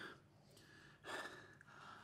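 Near silence with one faint breath from a man, an exhale about a second in.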